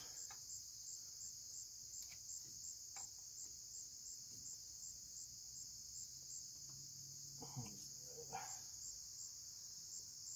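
Insects, crickets by the sound, chirping steadily in a high continuous band that pulses about two or three times a second, with a few faint clicks.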